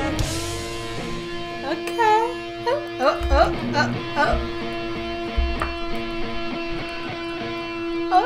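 Electric guitar solo played live: one long held note with quick bent notes sliding above it in the first half, and a few low thumps in the middle.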